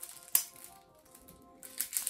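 Plastic shrink wrap on a deck of game cards crackling as it is peeled off by hand, with one sharp crack about a third of a second in and more crinkling near the end. Quiet background music with held melodic notes plays underneath.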